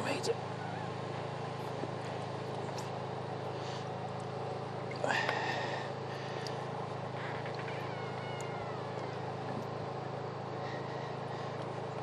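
Drain-jetting unit's engine running with a steady low drone. A short, louder voice-like sound comes about five seconds in.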